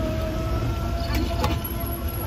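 Metal tongs tossing noodles in a metal pan, with a couple of short clinks about a second and a half in, over a steady low rumble of street traffic and faint background voices.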